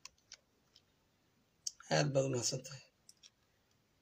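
A man's voice speaking one short phrase about two seconds in, with a few faint, short clicks in the pauses before and after it.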